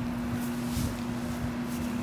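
A steady machine hum at one constant pitch, with a low rumble underneath.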